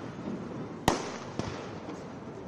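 Firecrackers going off in a street crowd: two sharp bangs, the louder just under a second in and a smaller one about half a second later, over the hubbub of the marching crowd.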